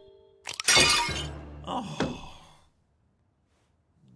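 Cartoon crash of a bowl breaking as a solid block of frozen milk lands in it. A few small clicks come about half a second in, then a loud smash that rings and fades over about two seconds, with a second crack near the end of it. A short "Oh" comes partway through.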